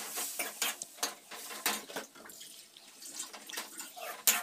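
Metal ladle stirring and scraping in a steel kadhai, with irregular clicks and scrapes against the pan, over a faint hiss of frying.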